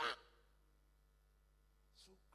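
A man's amplified voice finishes a word, then a pause in the sermon with only faint room tone and a steady low electrical hum.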